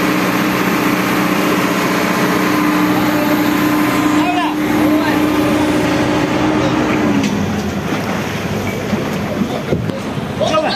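Excavator's diesel engine running at a steady note, over the rush of water in the canal. About seven seconds in, the engine note drops lower.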